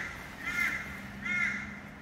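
A bird calling twice, two short calls about three-quarters of a second apart, over a faint steady low hum.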